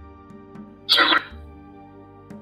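Soft background music with sustained tones; about a second in, one short, loud, hiss-like burst cuts across it. The burst is presented as a metaphony (EVP) voice recording, which the on-screen caption reads as "C'è tua madre Elsa".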